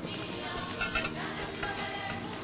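A metal spoon clinking lightly against serving dishes a few times around the middle, over soft background music.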